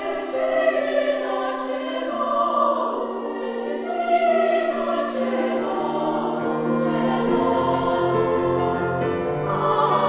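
Women's choir singing slow, sustained chords in Latin with piano accompaniment, lower accompanying notes entering in the second half.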